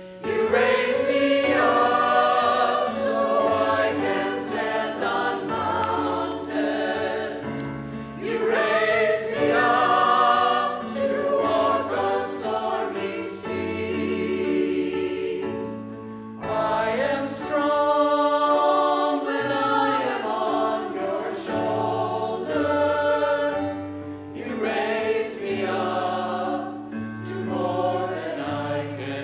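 A mixed choir of men's and women's voices singing a church anthem in sustained phrases, with short breaks between phrases about a third and halfway through.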